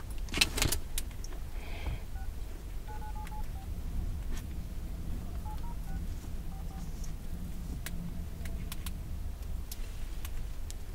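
Short electronic beeps from a smartphone's keypad as it is tapped, in two small runs about two to three and a half seconds in and again about five and a half to seven seconds in. Under them runs a low steady rumble inside a car, with a few sharp clicks in the first second.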